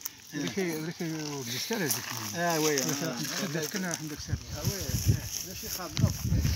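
A man speaking for about four seconds, then a low rumble on the microphone, like wind, with no voice.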